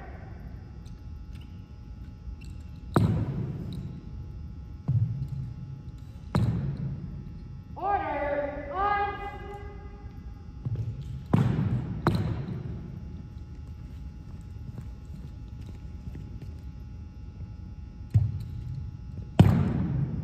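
Sharp thuds of a drill rifle and boots striking a hardwood gym floor during armed drill movements, about seven in all, some in quick pairs, each echoing through the large hall. A short shouted drill command comes about eight seconds in.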